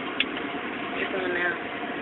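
A single sharp click, a key being pressed on a cryostat's control panel, over a steady machine hum.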